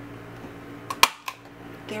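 Crop-A-Dile hand punch snapping through a board to punch an eyelet hole: one sharp click about a second in, with lighter clicks just before and after it.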